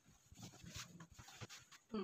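Faint rustling of clothing fabric in a string of short brushes as a uniform top is pulled on and smoothed down, with a brief voiced sound near the end.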